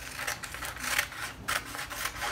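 Scissors cutting through paper pattern paper: a run of short, crisp snips, several in quick succession.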